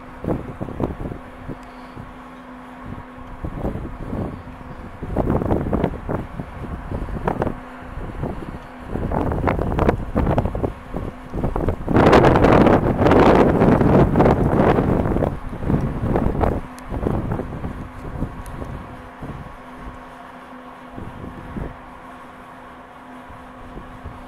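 Wind buffeting the microphone in irregular gusts that come and go every few seconds. The longest and strongest gust lasts about three seconds around the middle.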